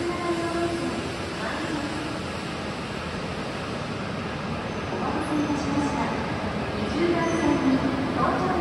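E6-series shinkansen train running along the platform, a steady rolling rumble of wheels and running gear that grows a little louder in the second half.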